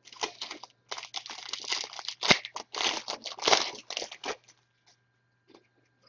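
Wrapper of a Score football card pack crinkling and tearing open: a dense run of rustling for about four seconds, with one sharp snap near the middle, then a few light ticks.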